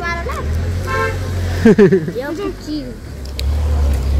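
A vehicle horn toots briefly about a second in, over a steady low rumble of street traffic.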